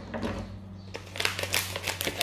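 Foil pouch crinkling as it is handled, then a run of sharp crinkles and snips in the second half as scissors cut it open, over a low steady hum.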